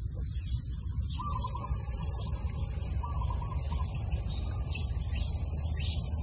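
Outdoor field ambience: a steady low rumble under a constant high drone, with two short pitched calls, about a second in and again around three seconds.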